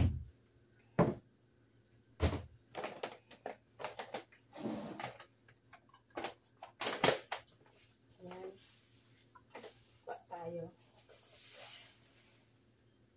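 Kitchen handling sounds: a string of sharp knocks and clunks as a glass bowl is brought down from a cupboard and set on the counter, the loudest at the very start. Near the end comes a soft rustle as a plastic bag of quinoa is opened.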